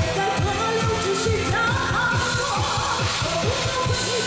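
A Mandarin pop song: a woman singing into a microphone over music with a fast, steady bass-drum beat.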